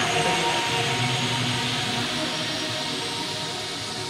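Ambient electronic music: held synth tones under a hissing noise wash that slowly fades.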